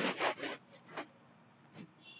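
Quiet computer-mouse handling: a short rasping run of scroll-wheel ticks in the first half second, then a single click about a second in and another near the end.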